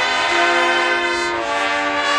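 High school marching band's brass section playing loud, sustained chords; the chord changes about one and a half seconds in.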